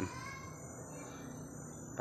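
Steady high-pitched chorus of forest insects, continuous shrill tones over a faint background hum of the woods.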